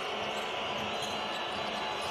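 Steady crowd din in a basketball arena during live play, with a basketball being dribbled on the hardwood court.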